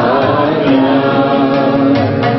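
Voices singing a song together, unaccompanied, with long held notes.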